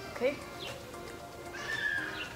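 Background music, with a horse's whinny, wavering and high-pitched, rising over it near the end.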